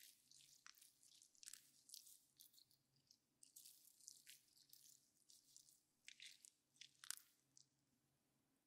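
Faint, irregular crinkling and crackling right at the microphone: close-miked ASMR handling sounds as a wound is patched up.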